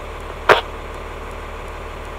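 Fire department vehicle's engine idling with a steady low hum, heard from inside the parked cab, with one short sharp click about half a second in.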